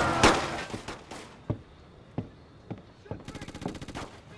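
Gunfire in a film shootout: one loud shot at the start, then several single shots spaced roughly half a second to a second apart, and a rapid burst of automatic fire near the end.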